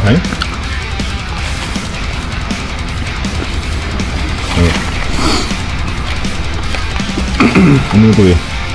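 Background rock music with guitar playing steadily, and a man's voice speaking briefly near the end.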